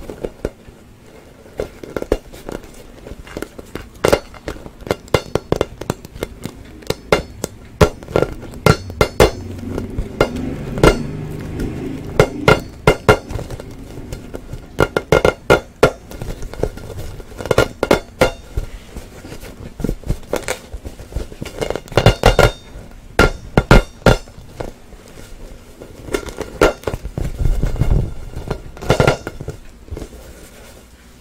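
Inflated vinyl play ball tapped and scratched by fingers close to the microphone: irregular runs of sharp taps, with softer rubbing on the ball's surface in between.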